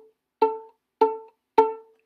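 Violin string plucked pizzicato three times, about half a second apart, each time the same note: fourth-finger A on the D string. Each note starts sharply and dies away quickly.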